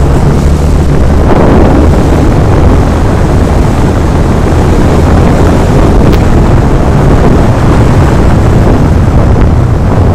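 Wind buffeting the microphone of a helmet-mounted Xiaomi Yi action camera while riding along a road at speed: a loud, steady rushing noise with a low steady hum underneath.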